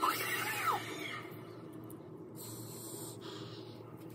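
A person's soft laugh trailing off into a brief squeaky note, then a short soft hiss of breath about two and a half seconds in.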